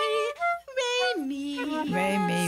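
A woman's voice singing long held notes with vibrato, the melody stepping down in pitch from note to note.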